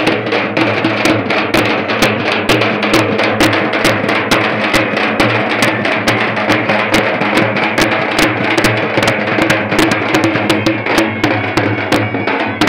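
Loud, fast drumming from a group of drums, many sharp strokes a second without a break.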